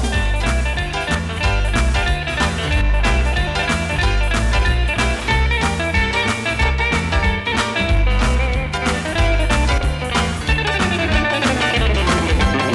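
Instrumental break of a rock and roll song: guitar playing over bass and a steady drum beat, with a descending run near the end.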